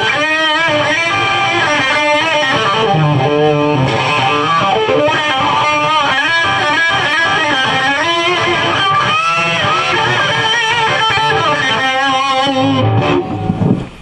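Electric guitar played through a germanium Fuzz Face and a King Vox wah fitted with a Chasetone buffer, the wah sweeping the fuzzed tone up and down as notes and chords ring, keeping its full tone. The playing stops about a second before the end.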